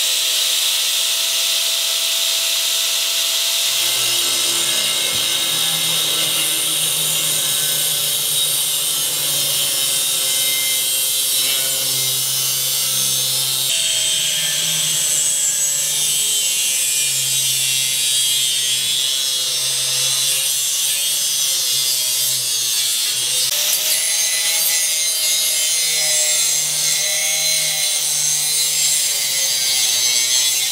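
Angle grinder with a thin cutoff wheel cutting through 1/8-inch steel square tube: a continuous high-pitched grinding screech. The motor's pitch wavers as the wheel bites into the steel, from about four seconds in.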